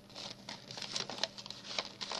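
Paper being handled: irregular rustling and crinkling as sheets and envelopes of craft ephemera are shuffled and turned over.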